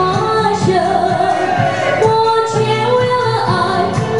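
A woman singing live into a handheld microphone over amplified musical accompaniment, heard through a PA system.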